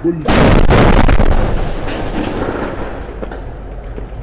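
A large explosion goes off about a quarter-second in, very loud for about a second. It is followed by a heavy rumble that slowly dies away over the next few seconds.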